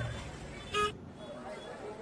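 A single short, high horn toot about three-quarters of a second in, over the faint murmur of a crowd in a busy market lane.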